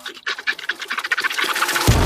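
Cartoon sound effect of milk squirting into a metal pail in quick strokes, about ten a second and growing louder. Just before the end comes a sudden loud blast of fire.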